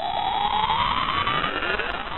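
Electronic intro sound effect: a synthesized tone rising steadily in pitch, with a grainy, buzzy texture underneath.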